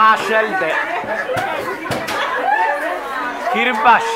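Several people talking at once: overlapping conversation and chatter of a gathered group.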